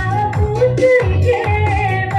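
A woman singing a rijoq song, the Dayak style of sung verse, into a microphone with a melody that slides between notes, backed by an electronic keyboard playing a steady bass beat of about two thumps a second.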